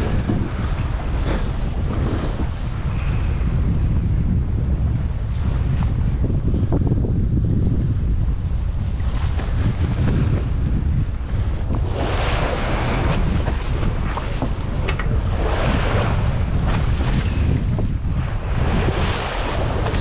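Wind buffeting the microphone over the sea, with water washing and splashing along the boat's hull. The washing comes in louder surges over the second half.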